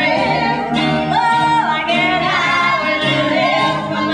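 Several female singers singing together into microphones over a live band with guitar.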